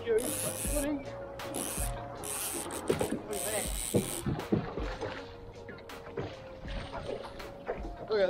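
A snapper being fought to the side of a small boat and landed: bursts of splashing hiss in the first half, then several sharp knocks between about three and five seconds in.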